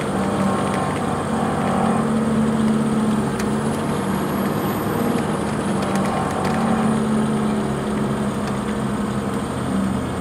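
Cabin noise inside a 2015 MCI D4505 motorcoach cruising on the highway: the steady drone of its Cummins ISX diesel engine, with tyre and road noise and a few faint rattles.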